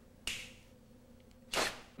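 Two sharp finger snaps about a second and a quarter apart, the second louder, over a faint steady hum.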